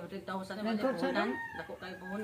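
A rooster crowing, with people talking over it.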